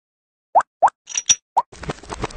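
Cartoon-style logo animation sound effects: three short rising "bloop" plops, with two brief hissy pops between the second and third, then a quick run of light clicks near the end.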